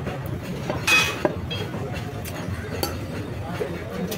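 Cleaver working chicken on a wooden log chopping block, with one loud ringing metallic clink about a second in, a sharp knock just after it and a few lighter clicks later, over a background murmur of voices.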